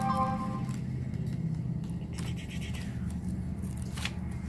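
Paper pages of a spiral-bound coin price guide being turned and rustled, in light scattered rustles and clicks, over a steady low hum. A short tone sounds at the very start.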